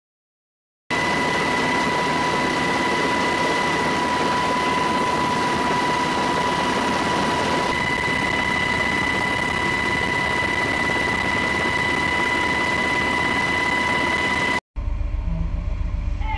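Steady aircraft engine drone with a constant high whine, heard as cabin noise aboard an aircraft filming from high overhead. It starts abruptly about a second in and cuts off just before the end; no explosion is heard.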